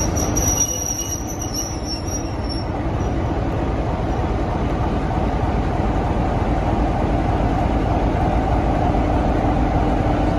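Class 47 diesel locomotive's Sulzer V12 engine running steadily as the locomotive creeps along the platform, with a high squeal from the wheels for the first three seconds or so. The engine sound grows gradually louder as it draws near.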